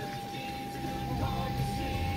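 Low rumble of a car heard from inside its cabin, under a steady thin tone and faint distant voices.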